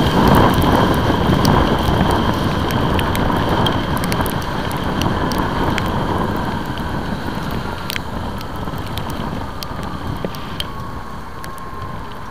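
Wind rush and wet-road noise from a motorcycle riding through heavy rain, with raindrops ticking sharply on the camera. The noise fades gradually.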